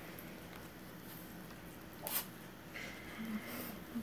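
Forks twirling noodles on plates, faint and quiet, with one short scrape about two seconds in.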